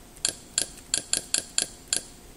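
Kodi menu navigation sound effect: a run of seven short, identical pitched ticks, one for each step as the selection moves along the submenu, irregularly spaced about a quarter to a third of a second apart.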